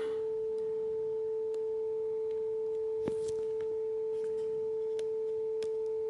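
Sine-wave test tone from a phone's signal-generator app, played through the phone's speaker: one steady, unwavering tone, with a faint click about halfway through. It is the test signal being fed into the op-amp preamp's microphone.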